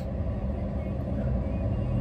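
Steady low hum of a car engine idling, heard from inside the closed cabin.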